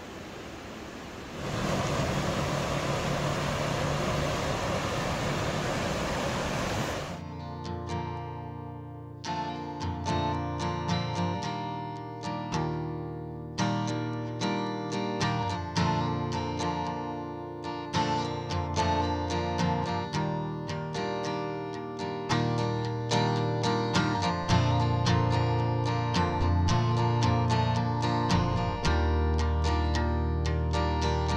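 Acoustic guitar music, plucked and strummed, comes in about seven seconds in and runs on. Before it there are a few seconds of steady rushing water from the river.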